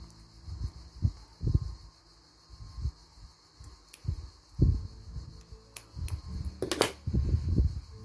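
Scissors cutting through a bundle of cotton thread wound around a Post-it, amid soft handling thumps of fingers on paper and thread, with one sharper, louder noise near the end.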